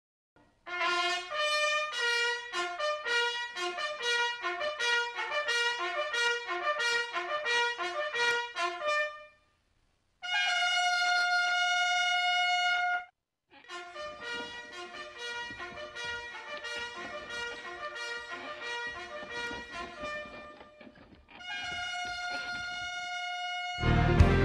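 Brass coach horn calls: a quick run of short notes for about eight seconds, then one long held note; after a short break a second, softer run of quick notes, ending on another long held note.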